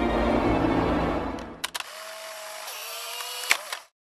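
Music that stops about a second and a half in, giving way to a few sharp clicks and a quieter steady mechanical whirr, with one louder click near the end before the sound cuts off.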